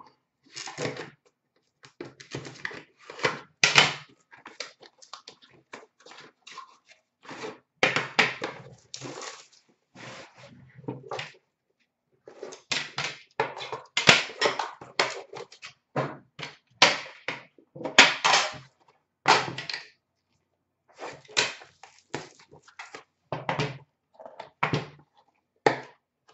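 A cardboard hockey card box being slit and torn open, and the metal tin inside slid out, set down and its lid lifted off: irregular scraping, rustling and knocks with short pauses.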